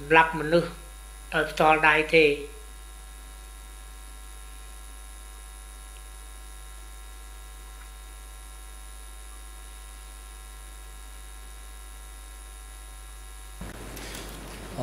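A voice speaks briefly at the start. After that comes a steady electrical mains hum, a buzz of many evenly spaced tones, which changes just before the end.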